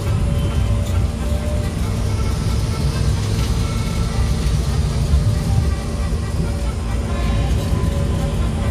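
Amusement-park monorail car running along its track, a steady low rumble heard from inside the cabin, with music playing underneath.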